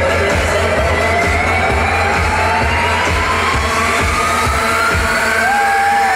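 Electronic dance music played loud over a nightclub sound system: a deep steady bass under a synth tone that rises slowly and evenly in pitch through the whole stretch.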